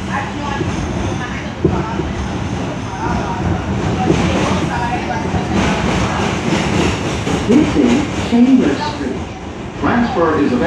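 An R142 subway car running along the track, with the steady rumble and rattle of the wheels and car body. A voice is heard over it near the end.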